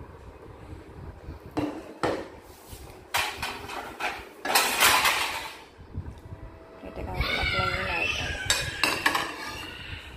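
Plates and stainless steel pots clinking and knocking as they are handled in and around a dishwasher's rack, with a few separate knocks followed by a louder rattle about halfway through.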